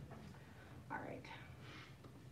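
A faint, distant voice speaks briefly about a second in, over a low, steady room hum.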